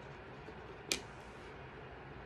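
Quiet room tone with a single sharp click about a second in.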